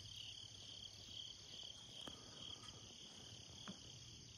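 Faint insect chorus, a steady high-pitched trill that pulses evenly, with a couple of faint ticks.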